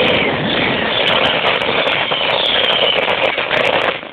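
Traxxas Stampede VXL RC truck, brushless motor on an 11.1 V LiPo, running fast over pavement and heard from a phone riding on the truck. A motor whine rises and falls with the throttle over loud tyre and road rumble, with frequent sharp clicks and rattles from the chassis.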